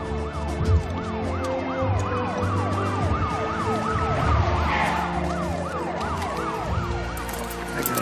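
Police car sirens sounding together: a fast yelp sweeping up and down about three times a second, with a slower wail rising and falling over it. Steady low tones run beneath.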